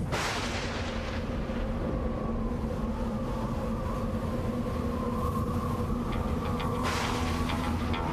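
Cinematic film-trailer soundtrack: a deep boom hit at the very start, fading over about a second, then a sustained music drone of held notes. A short rush of noise swells near the end.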